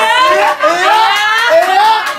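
A voice singing wordless sliding notes a cappella, in short rising phrases, with no guitar playing.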